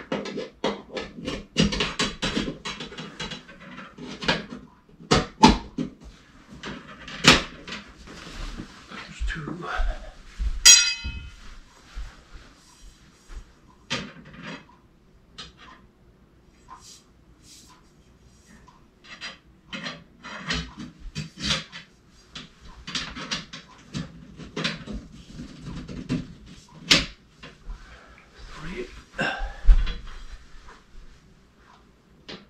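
Metal hoop tubing of a paramotor cage being handled and slotted together: scattered clicks, knocks and rattles of the tubes, with a brief ringing tone about eleven seconds in.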